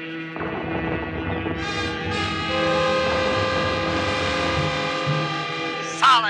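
Orchestral radio-drama score holding sustained, horn-like chords that swell and grow fuller about two seconds in, over a low rumbling sound effect that starts suddenly about half a second in.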